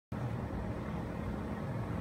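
Ram 2500 Heavy Duty pickup's Cummins turbo-diesel straight-six idling steadily.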